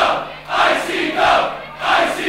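Large wrestling crowd chanting in unison: a loud, rhythmic chant that repeats in short phrases with brief dips between them.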